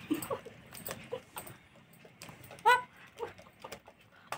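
Alexandrine parakeet giving a few short calls, the loudest about two-thirds of the way in, among soft scattered clicks.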